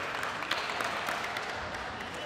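Scattered applause from a small crowd, many sharp separate claps that slowly die away.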